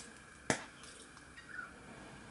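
A single sharp click about half a second in, over quiet room tone.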